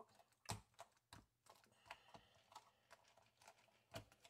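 Faint, irregular light taps and pats of tape being pressed by hand against a silicone measuring cup to pick up flecks of dried epoxy. The loudest tap comes about half a second in.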